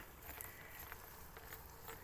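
Faint, quiet sound with a few soft ticks and light patter: water venting and dripping from the drain pipe of a homemade steam box.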